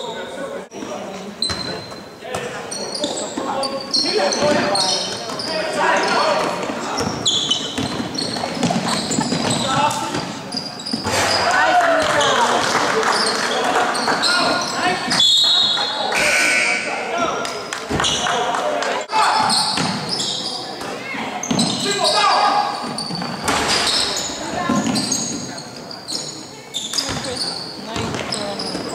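Basketball game in an echoing gym: the ball bouncing on the hardwood floor, sneakers squeaking as players run and cut, and players' voices calling out.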